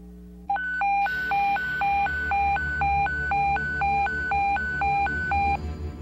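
Electronic hi-lo alarm tone, a siren-like signal switching between a lower and a higher pitch about twice a second over a low hum, starting about half a second in and stopping shortly before the end.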